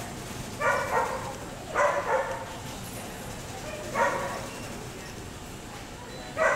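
A dog barking several times in three short bursts, the last about four seconds in, as it runs an agility course.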